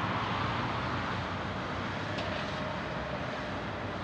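Jet engine noise from a Boeing 777-300ER's GE90 engines as the airliner rolls out on the runway after touchdown, a broad rushing sound that slowly fades as it decelerates. A faint steady whine joins about halfway through.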